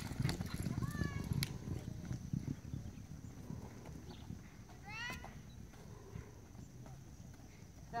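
Horse galloping on a dirt arena, its hoofbeats thudding strongly at first and fading over the first few seconds as it moves away. A person calls out briefly about a second in and again around five seconds in.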